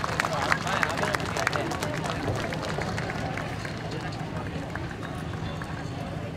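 Hurried footsteps and scattered clicks as a troupe of dancers runs off an outdoor stage, with faint voices from the audience behind.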